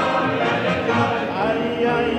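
Cantorial singing: a male cantor's voice held with vibrato over orchestral accompaniment.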